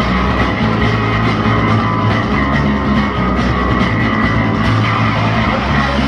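Fast punk rock band music with electric guitars and drum kit, no vocals, with an electric bass played along on the low end.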